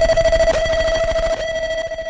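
A single steady electronic tone held without a break, with a few soft bass thumps beneath it, getting quieter in the second half: a sustained synth note bridging tracks in an Afrobeats DJ mix.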